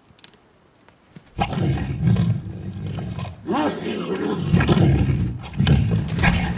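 A large animal's deep, loud vocal calls in long bouts, starting suddenly about a second and a half in, one bout near the middle rising and then falling in pitch.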